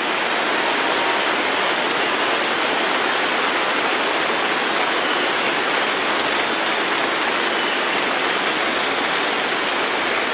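Audience applauding: a steady, dense wash of clapping.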